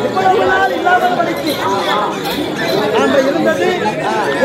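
Several voices talking over one another throughout.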